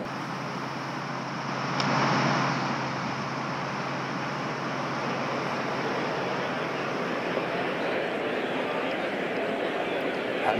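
A golf club strikes a ball once, sharply, about two seconds in. A swell of spectator crowd noise follows and settles into a steady murmur.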